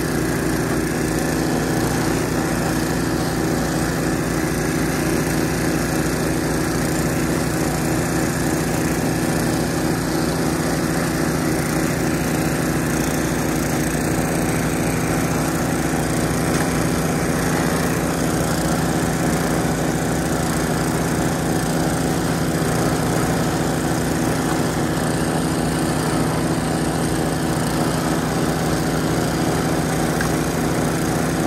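John Deere TRS24 snowblower's engine running steadily under load while it clears a path and throws snow out of the chute.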